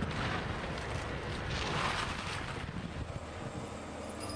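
Heavy demolition machinery running: a steady engine rumble mixed with noise, swelling briefly about two seconds in.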